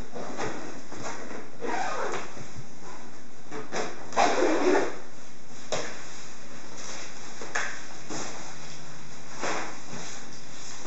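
The nylon carry backpack of a compact travel stroller being unzipped and opened in a series of short scrapes, with the fabric rustling and the folded stroller's frame knocking as it is lifted out. The loudest scrape comes about four seconds in.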